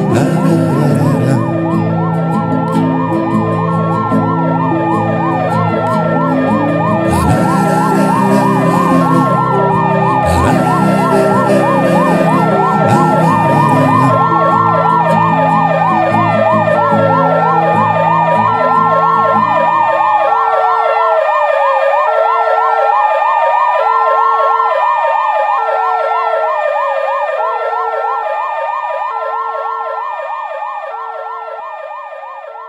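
Wailing siren sound effect rising and falling slowly, about once every five seconds, over a held instrumental chord with two cymbal-like crashes. The chord stops about two-thirds of the way through, leaving the siren and a short pulsing tone alone as they fade near the end.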